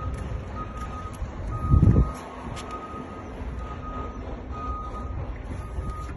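A vehicle's reversing alarm beeping about once a second, one steady high tone, over a low rumble, with a loud low thump about two seconds in.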